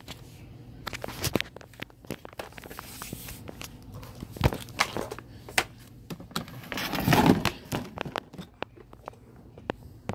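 Handling noise: rustling with many scattered sharp clicks and knocks, and a louder rustling rush about seven seconds in.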